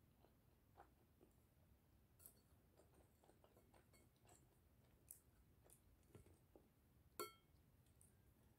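Near silence with faint eating sounds: quiet chewing and light scattered clicks. About seven seconds in, a spoon taps the plate once with a short ring, the loudest sound.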